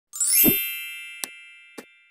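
Logo intro sound effect: a bright ringing ding with a rising sweep and a low thump about half a second in, ringing away, followed by two short clicks.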